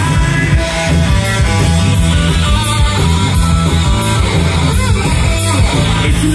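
Live rock band playing: electric guitar over bass and a steady drum beat.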